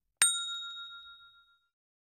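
A single bright bell 'ding' sound effect, struck once and ringing out for about a second and a half before fading away. It is the notification-bell chime of an animated subscribe-button click.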